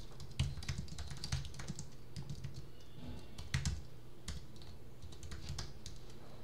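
Computer keyboard being typed on in short, irregular runs of key clicks, with flurries about half a second in and again around three and a half seconds, over a faint steady low hum.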